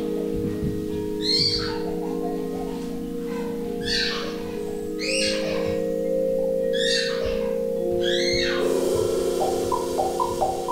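Vibraphone playing slow, long-ringing chords. A swishing sound that falls in pitch comes five times, about every one to two seconds, and quick short mallet notes come in near the end.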